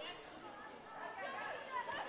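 Distant voices calling out and chattering across a football ground, faint under a light hiss, becoming clearer about a second in.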